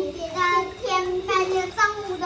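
Young girls singing a pop song, their child voices carrying a melody with held notes.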